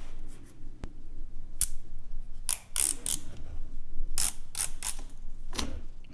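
Red plastic liner being peeled off 3M double-sided tape on the back of a plastic logo: a series of short, scratchy rips, with a sharp click about a second in.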